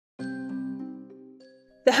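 A short chime-like musical sting: a bell-like chord struck about a fifth of a second in and fading away, with a higher note added about halfway through. A woman's narration begins just before the end.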